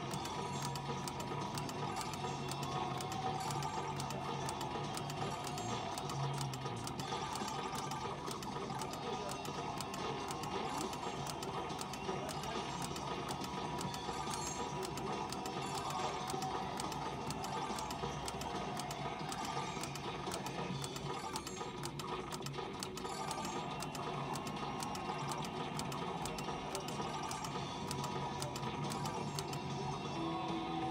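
Pennsylvania Skill game machine in its bonus round: a fast, steady stream of clicks from its sound effects as gems drop into the cup, over the game's background music.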